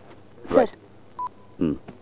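One short electronic beep from a mobile phone about a second in: a single steady tone that dies to a fainter tail.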